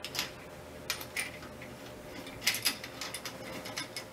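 Small metal and brass parts of a telescope mount clicking and tapping lightly as a fitting is lined up and worked onto the drive shaft by hand, with several separate clicks over a few seconds.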